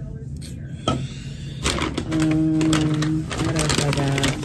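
A woman's voice, wordless or indistinct, with one long held sound in the middle, over light clicks and rustles of drink bottles and a takeout bag being handled.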